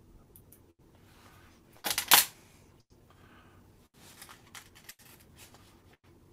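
Handling noise from fly tying by hand: one short, loud, scratchy rustle about two seconds in, then a few faint clicks and small rustles.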